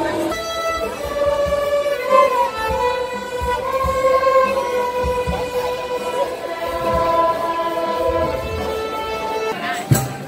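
A children's violin ensemble playing a slow melody in long held notes. The music cuts off abruptly just before the end, with a click.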